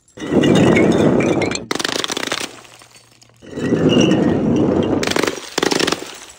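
Glass jars and bottles of paint shattering on tile paving, the glass breaking and shards scattering and clinking. There are two long crashes: one starts just after the opening, and the second starts about halfway through and runs until shortly before the end.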